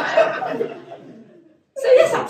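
Audience laughter after a punchline, dying away about a second and a half in. A woman's voice starts again near the end.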